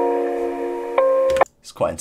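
A melody of sustained keyboard-like chords played through the Decimort2 bit-crusher plugin, with a new chord struck about a second in. The playback cuts off abruptly about a second and a half in.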